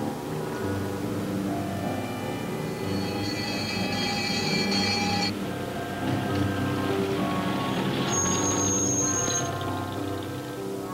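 Soundtrack music made of held chords. A cluster of high sustained notes comes in about three seconds in and breaks off about two seconds later. A single high held note sounds near the end.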